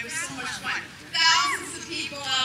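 Crowd voices: several people calling out over each other, with one loud, high shout just after a second in.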